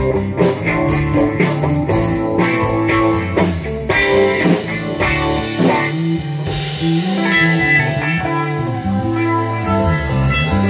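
Rock band playing an instrumental passage with no singing: two electric guitars, bass guitar and drum kit.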